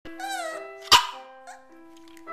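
A dog gives a brief wavering whine, then one sharp bark about a second in, the loudest sound, over held piano notes.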